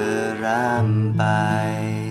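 A man singing a slow Thai love ballad in Thai, with a wavering vibrato on a held note about half a second in, over a strummed acoustic guitar.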